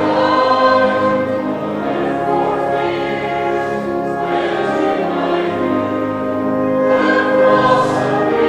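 Church congregation singing a hymn in slow, held notes: the fourth verse, 'No room for doubt, no room for fears, When to my view the cross appears'.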